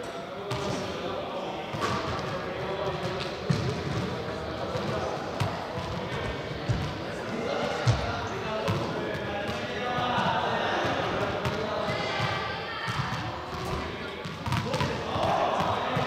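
Balls bouncing on a sports-hall floor: scattered, irregular thuds that echo in the large hall, with voices talking in the background.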